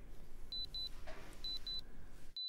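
Short high electronic beeps in pairs, two beeps a quarter-second apart, the pair repeating about once a second over a faint low studio hum: the alert of an auction countdown timer run down to zero.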